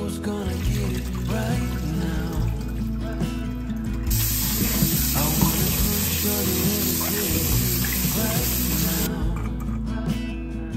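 Kitchen tap running into a bowl of mandarins in a stainless steel sink, a steady splashing hiss from about four seconds in that stops sharply about five seconds later, over background music.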